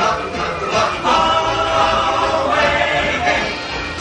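Show music with a chorus of voices singing, the song of the animatronic birds played over the attraction's sound system.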